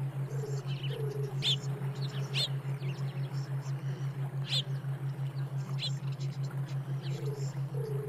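A low hum pulsing several times a second, the binaural-beat tone of a meditation track, with scattered bird chirps layered over it.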